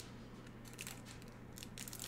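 Faint handling noises: a few soft clicks and light rustles, with a low steady hum underneath.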